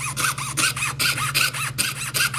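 Jeweler's saw with a waxed fine blade cutting a laminate countertop sample against a wooden bench pin. It makes an even run of quick rasping strokes, about four to five a second, each with a brief squeal.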